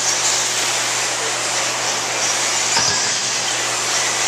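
1/8-scale electric RC buggies running on a dirt track: a steady hiss of motors and tyres with faint high whines rising and falling as they accelerate, over a constant low hum. A light knock about three seconds in.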